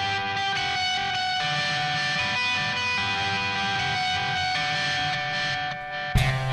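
Electric guitar playing the song's intro on its own: held notes and chords ringing over one another, with no drums, and a brief dip in level near the end.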